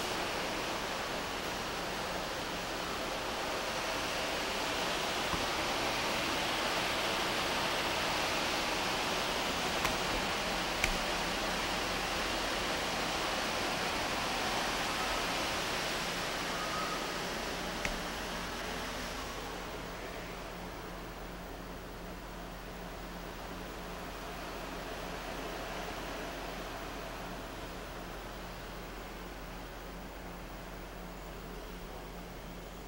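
Steady hiss with a faint low hum. It grows duller and a little quieter about two-thirds of the way through, with a few faint clicks near the middle.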